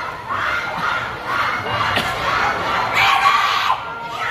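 A large crowd of fans screaming and cheering, with many high-pitched voices overlapping.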